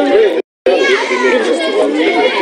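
Several people talking over one another in raised voices in a street confrontation, one ordering others back. The sound cuts out completely for a moment about half a second in.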